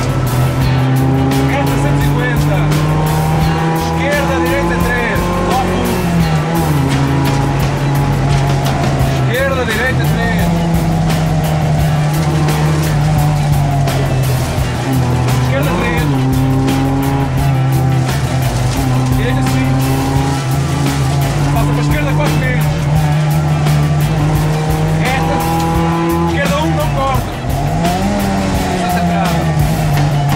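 Renault Clio 1.2's four-cylinder engine heard from inside the cabin, pulling hard at high revs. The pitch climbs steadily in each gear and drops sharply at each of several upshifts.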